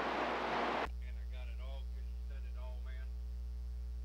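CB radio receiver: the static hiss of an open channel cuts off abruptly about a second in as the other station stops transmitting, leaving a steady mains hum with a faint voice underneath.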